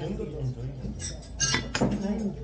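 Stainless steel chopsticks and spoon clinking against metal bowls and dishes while eating, with a few sharp clinks in the second half.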